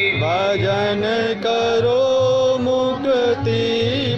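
Devotional chant (bhajan) sung into a microphone with long held, slightly wavering notes that glide from one pitch to the next, over a steady low beat.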